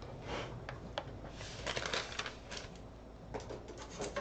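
Paper rustling and crackling in short bursts as printed sheets are handled and a page of an altered book is turned.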